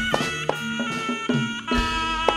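Live jaranan music: a reed shawm (slompret) plays a sustained, wavering melody over sharp drum strokes and low repeating notes.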